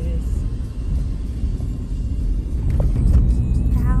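Steady low rumble of a car driving slowly on a wet, rough dirt road, heard from inside the cabin.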